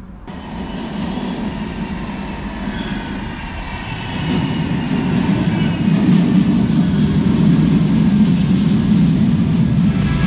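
Manchester Metrolink M5000 tram pulling into the platform: its wheels rumble on the rails under a faint electric whine. It grows louder from about four seconds in as it draws level and runs past close by.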